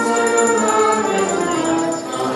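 Small church choir singing a hymn, accompanied by a trombone, with sustained notes.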